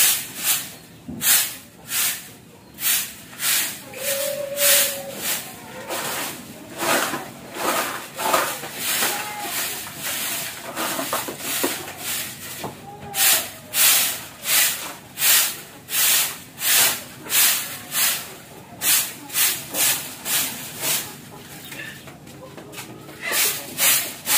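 A long-handled broom sweeping a sandy dirt floor: brisk repeated swishes, about one or two a second, thinning out near the end.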